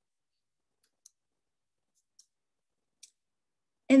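Near silence broken by three faint, sharp clicks about a second apart.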